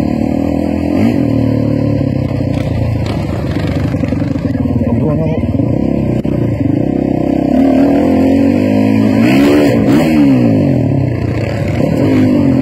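Freestyle motocross dirt bike engine revving as the bike runs across the arena and up to a jump ramp, the engine note wavering up and down; near the end it climbs steeply and drops again.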